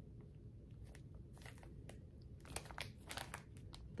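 Faint crinkling of a clear plastic bag holding a cross-stitch kit as it is handled: scattered small crackles, clustered about a second and a half in and again near the end.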